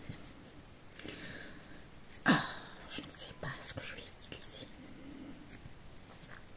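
Quiet handling and rustling of a pack of makeup wipes, with one sharper knock a little over two seconds in and a few small clicks after it.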